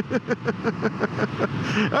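A man laughing in a quick run of short 'ha' bursts, about six a second, tailing off after a second and a half, over the steady noise of the motorcycle riding at speed. A word begins right at the end.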